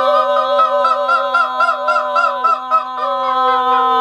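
A woman singing with quick warbling ornaments, about three a second, over a steady held drone; her line slides down to a lower held note a little past halfway.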